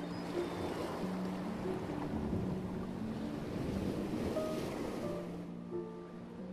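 Sea surf washing and breaking over soft background music of sustained low notes; the surf fades out near the end.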